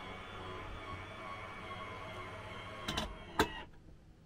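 Electric motor of a motorhome's drop-down bed running steadily with a faint whine as it lowers the bed, with a couple of sharp knocks about three seconds in before the motor stops near the end.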